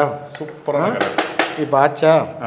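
A man talking, with a few sharp clinks of a metal utensil against a steel pot.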